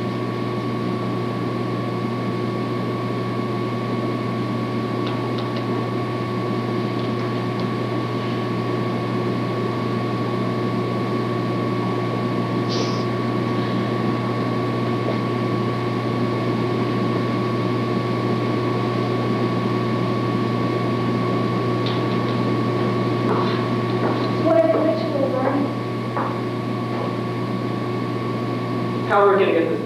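Steady hum and hiss with a constant high tone underneath, the background noise of an old camcorder recording of a theatre stage. About three-quarters of the way through, a brief voice is heard.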